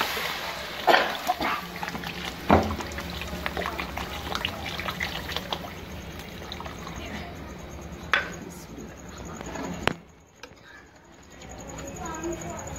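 Water poured in a steady stream into a pot of hot curry masala to make the gravy, with a few sharp knocks along the way; the pouring stops about ten seconds in.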